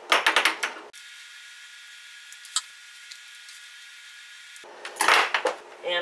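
Sewing scissors cutting through a polyester blouse on a cutting mat: quick clusters of sharp snips and clicks at the start and again near the end. Between them is a quiet stretch of steady hiss with a single click.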